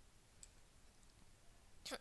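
Near silence: quiet room tone, with a faint tick about half a second in and a short, sharper click near the end.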